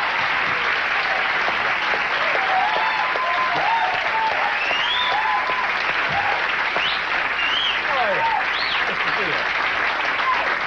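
Studio audience applauding and cheering steadily, with shouts and whoops rising and falling over the clapping.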